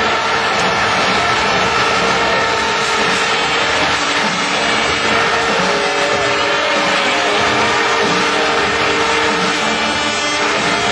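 A speedway motorcycle's 500cc single-cylinder methanol engine running as the bike rides round the track, with its pitch rising and falling a few times. It sounds over a steady, loud wash of stadium crowd noise with a few long held tones.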